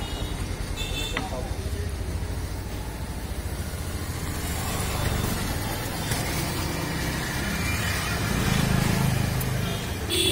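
Low, steady rumble of a motor vehicle engine running in the street, getting louder near the end, with voices in the background.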